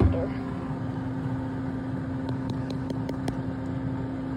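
Air fryer oven door shut with a single thump, then the air fryer running with a steady hum from its fan.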